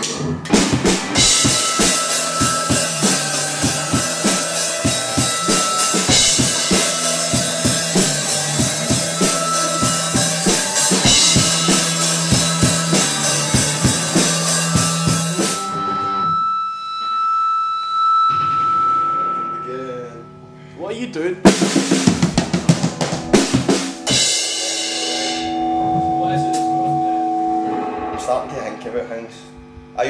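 Post-punk band playing live in the studio: drum kit, electric guitars and bass, with a steady drum beat through the first half. About halfway through the drums stop and held guitar notes ring on. A short burst of drumming follows, then more held notes.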